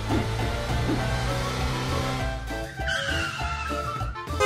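Music with a sound effect over it: a rush of noise, then a squeal that falls slowly in pitch starting about three seconds in.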